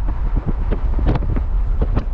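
Wind buffeting the microphone over the steady low rumble of a car driving along the road.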